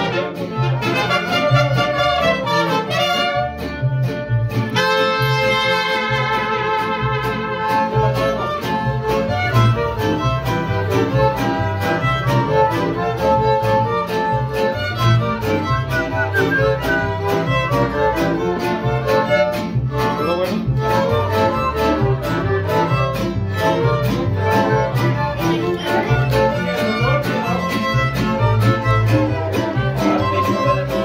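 Mariachi band playing live: violins carrying the melody over strummed guitars and a steady bass rhythm.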